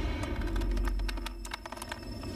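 TV title-sequence music: a low rumbling drone under a quick run of sharp clicks and hits, dipping slightly in level near the end.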